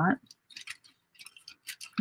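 Paper envelopes being handled and folded by hand: a few brief, soft paper crinkles and rustles.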